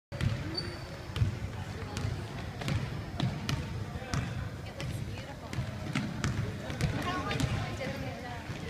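Basketball being dribbled on a hardwood gym floor, with bounces coming roughly twice a second, over the murmur of spectators talking.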